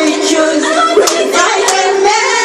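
Several people singing together, with a few hand claps in time, the claps sharpest about a second in and again near the end.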